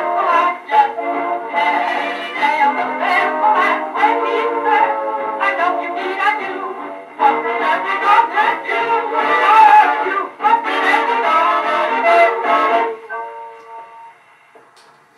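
A 1939 dance orchestra's 78 rpm record played on a hand-cranked Edison phonograph, with thin sound and no deep bass. The band plays the instrumental closing bars with brass, ends on a held chord about thirteen seconds in, and fades away.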